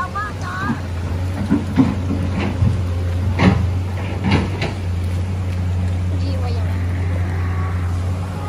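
An engine running steadily out of sight, a low hum at one pitch. There are brief voices at the start and a few short knocks in the first half.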